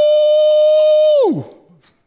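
A man's voice holding one long, high-pitched drawn-out exclamation. It drops in pitch and fades out about a second and a half in.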